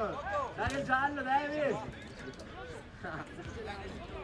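Men's voices calling out for about the first two seconds, then quieter, with faint scattered voices in the background.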